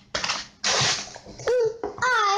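Packaging rustling in two short bursts, the louder one about half a second long near the middle, as items are handled in a cardboard subscription box. A brief high voice sound comes near the end.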